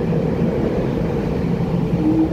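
Steady low hum of a standing EMU900 electric multiple unit train.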